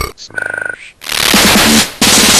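Harsh electronic breakcore track in a break. The beat drops out, a short buzzing tone sounds about half a second in, and after a brief gap a loud burst of harsh noise starts about a second in and cuts off just before the end.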